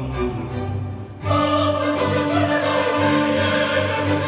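Mixed choir with a chamber string orchestra performing a classical-style arrangement of a traditional Polish Christmas carol. The music is soft for about the first second, then the full choir comes in loudly.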